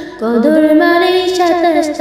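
A female voice singing a Bengali Islamic gojol, beginning a new melodic phrase just after the start and holding long, ornamented notes.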